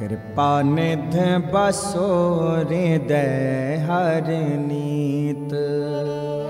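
Sikh kirtan music: a harmonium and a bowed taus play, carrying an ornamented melody that glides up and down over a steady drone.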